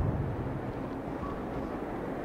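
A brief low thump of a clip-on lapel microphone being brushed by a hand right at the start, then steady low background rumble.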